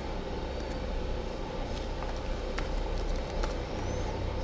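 Scattered keystrokes on a computer keyboard as text is typed, a handful of separate clicks, over a steady low hum.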